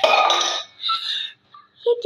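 A girl's loud, rough, breathy cry of pretend pain starting suddenly and lasting about half a second, then a shorter breathy cry, with a brief hush just before speech resumes.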